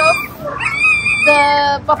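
A dog whimpering with high, thin, wavering whines.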